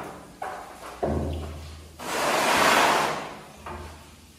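A broom at work on a tiled floor and wall: a couple of knocks in the first second, then one long scraping swish of bristles about two seconds in, and a light knock near the end.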